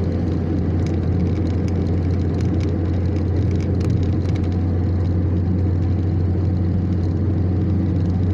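Steady in-cabin noise of a car cruising at highway speed: tyre, road and engine noise with a constant low hum.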